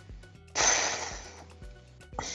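A person's sigh, a loud breathy exhale into the microphone about half a second in that fades away over about a second, over quiet background music with a steady low beat.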